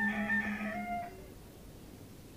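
Balinese gong kebyar gamelan ringing out on its final stroke: the large gong hums low with a slow beating pulse under the higher metallophone tones, with a higher wavering tone above. It all dies away about a second in, leaving faint tape hiss.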